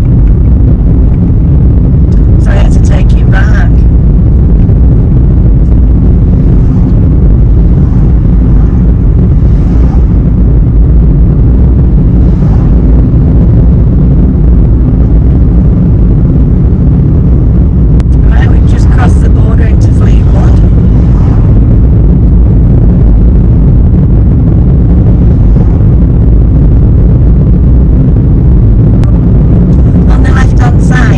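Car driving along a street, heard from inside the cabin: a loud, steady low rumble of road and engine noise.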